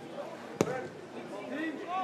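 A football struck once, a single sharp thump about half a second in, with faint shouting voices around it.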